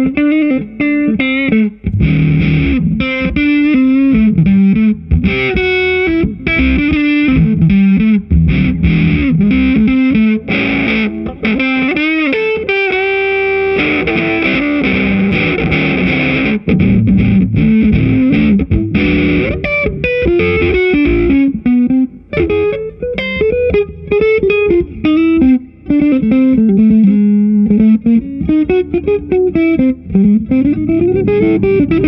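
Electric guitar on its single-coil pickup played through a Supro Fuzz pedal: a fuzzy lead line of single notes with string bends, including a held, wavering note near the middle and a rising bend at the end.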